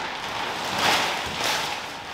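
A heavy shop door clad in old steel garage-door panels being pushed by hand, giving a rustling, scraping noise that swells twice.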